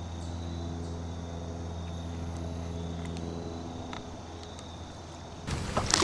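A steady low mechanical hum for about four seconds. Then, shortly before the end, a sudden loud burst of water splashing close by: a hooked bass thrashing at the surface on the line.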